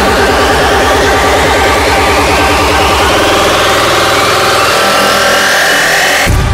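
Hardstyle build-up: a kick-drum roll speeds up until the hits blur into one buzz while a rising sweep climbs in pitch. The bass thins out near the end, just before the drop.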